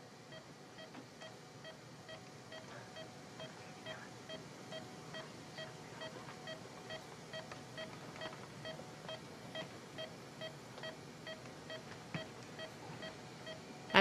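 Hospital intensive-care monitor beeping, an even run of short pitched beeps roughly three a second, over faint room hiss.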